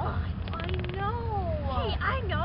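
A child's long, drawn-out whining moan that falls in pitch about a second in, over a steady low rumble.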